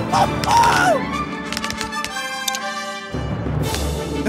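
Background music for a cartoon, with a short falling vocal exclamation about half a second in and a shimmering flourish in the middle.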